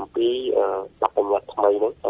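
Only speech: a voice talking in a Khmer-language radio news broadcast.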